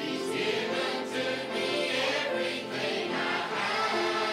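Church choir singing a slow gospel song together, with acoustic guitar accompaniment, voices holding long notes.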